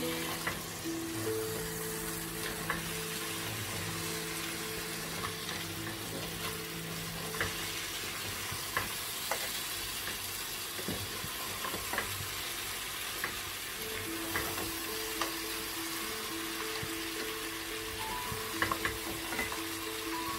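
Crab pieces in a thick masala sizzling in a frying pan while being stirred with a wooden spoon, a steady frying hiss with scattered sharp clicks of the spoon against the pan.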